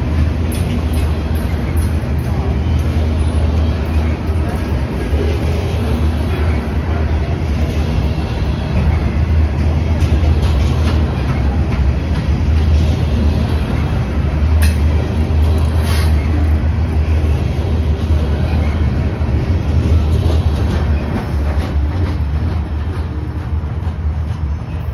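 Open-top gondola freight cars of a Norfolk Southern freight train rolling past close by: a loud, steady rumble of steel wheels on the rails. Two sharp metallic clicks come about two-thirds of the way through, and the sound eases slightly near the end as the last cars go by.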